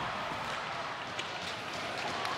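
Ice hockey rink ambience during live play: a steady crowd hubbub with a couple of faint clicks from sticks and puck.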